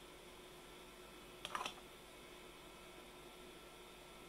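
Quiet room with a faint steady hum, and a brief cluster of light clicks about one and a half seconds in as small plastic lab items (petri dish, pH paper scraps) are handled on a plastic tray.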